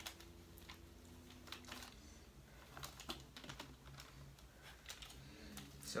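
Faint, scattered light clicks and rustles of DJI Phantom 4 Pro plastic propeller blades being handled and shifted in their sleeve.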